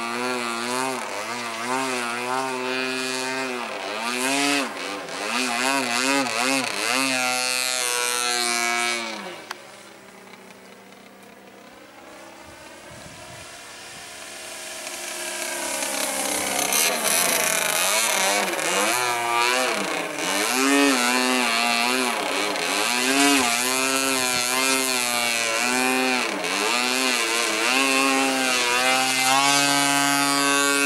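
Two-stroke MVVS 26cc petrol engine and propeller of a radio-controlled Yak 54 aerobatic model plane in flight, its pitch rising and falling as the plane manoeuvres. About nine seconds in the sound drops suddenly to a much lower level for several seconds, then builds back gradually to full power.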